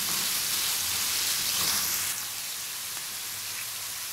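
Beef mince sizzling in hot oil in a frying pan as it is browned with ginger-garlic paste and spices; the sizzle eases a little about two seconds in.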